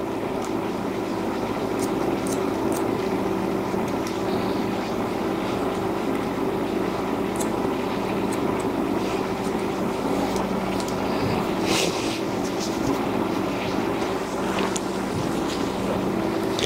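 A steady mechanical hum with a fixed pitch, with a few brief faint clicks of hair-cutting scissors snipping through the hair.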